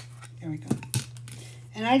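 Small metal tin of gilder's paste being worked open by hand: a sharp click as the lid gives, then two metallic clinks about a second in.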